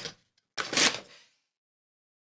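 Small cardboard box being handled: a light tap right at the start, then about half a second in a short, loud scraping rustle of cardboard as a power cord is drawn out of it.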